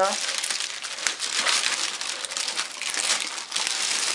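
A thin plastic bag crinkling and rustling in a dense, irregular crackle as it is pulled by hand off a subwoofer cabinet.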